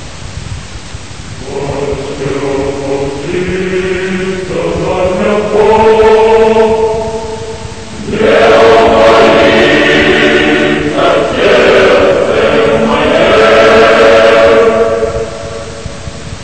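A choir singing a slow chant in long held chords, growing louder about halfway through.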